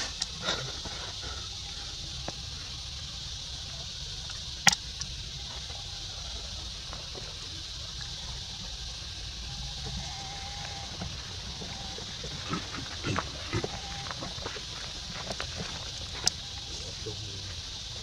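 Outdoor ambience with a steady high hiss, faint rustling on dry leaf litter and soft animal sounds from a troop of macaques, broken by two sharp clicks, one about five seconds in and one near the end.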